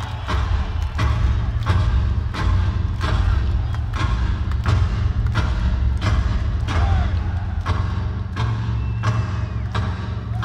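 Live rock-band drum interlude: several drums struck hard in unison in a slow, even beat of about three hits every two seconds, over a constant deep boom of bass.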